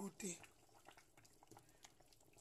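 Beef soup simmering faintly in a metal pot, with soft scattered pops and clicks as a wooden spoon stirs through the meat and broth.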